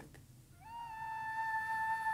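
Soundtrack music: a single flute note that slides up into pitch about half a second in, then holds steady and swells.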